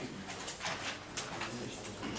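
Chalk strokes scratching on a blackboard as a line is drawn, several short scratches in a row.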